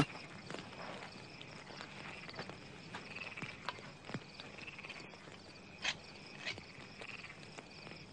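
Faint night ambience of crickets trilling in a steady high chirr, with a few soft taps and rustles; the most distinct come about six seconds in.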